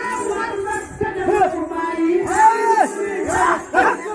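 A group of men shouting and chanting together for a Muharram folk dance, their long calls rising and falling in pitch, the loudest about two and a half seconds in and again just before the end.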